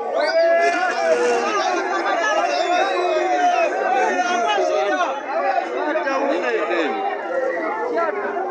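A crowd of many voices shouting and calling out over one another, with no single speaker standing out.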